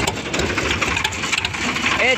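Sonalika tractor's diesel engine running with its silencer removed, a fast, steady, even patter of exhaust pulses as the tractor drives.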